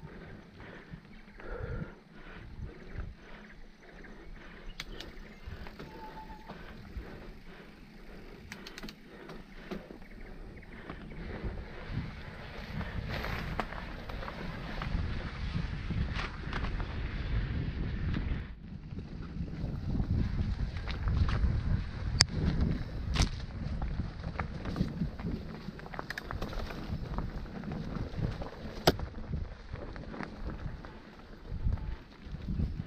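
Mountain bike rolling over a rough, stony dirt trail: tyres crunching on gravel and the bike rattling, with frequent sharp knocks and a low wind rumble on the microphone. It grows louder about halfway through, with a short lull a little after that.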